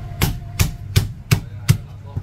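Meat cleaver chopping a piece of marinated goose into slices on a thick round wooden chopping block: five sharp chops, about three a second.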